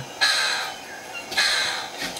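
Two harsh, rasping bird-of-paradise calls from a nature documentary, played through a laptop's built-in speakers, each lasting under a second.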